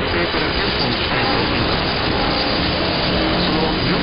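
Long-distance mediumwave AM reception of NHK-2 on 774 kHz through a KiwiSDR receiver: dense, steady static and hiss, with a few faint steady whistles from interfering signals and any Japanese speech buried in the noise. The passband is open wide, so the hiss reaches up to about 5 kHz.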